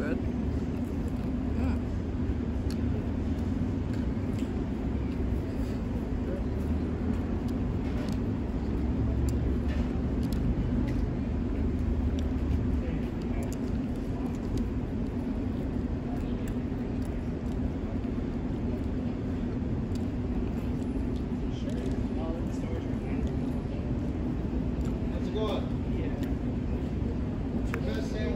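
Steady outdoor background: a constant low hum with a road-traffic rumble, heavier in the first half, and faint scattered clicks of chewing and handling food close by.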